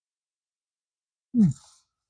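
Near silence, then about a second and a half in a man's short "hmm" with a breathy hiss, falling in pitch, as he tastes a mouthful of food.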